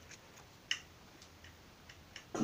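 Faint ticks of fingers handling the paper wrapper of a Babelutte caramel, with one sharper click about two-thirds of a second in.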